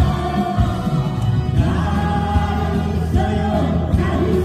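A group of singers singing a Korean song together into microphones over an amplified backing track, with a steady bass and beat.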